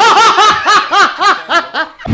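A high-pitched laugh: a run of about eight quick 'ha' pulses, roughly four a second, that weakens near the end.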